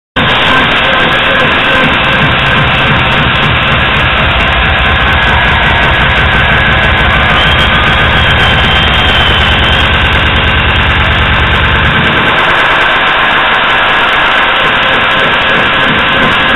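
Loud electronic dance music played by a DJ over a club sound system, with a heavy pulsing bass that drops out about twelve seconds in.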